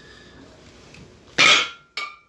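A loud, short burst of breath from the lifter about one and a half seconds in. Right at the end comes a metallic clank with brief ringing as the thick-handled, plate-loaded dumbbell is set down.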